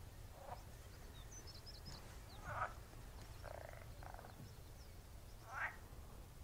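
Frogs croaking in a marsh: short calls every second or two, with a longer rattling, pulsed croak about three and a half seconds in. Faint high bird chirps and a steady low rumble lie underneath.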